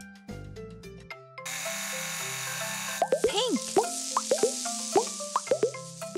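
Cartoon plop sound effects: a quick run of a dozen or so springy pops, about four a second, as balls pour out of a cement mixer drum into a box. Before them a hissing rush starts about a second and a half in, all over light children's background music.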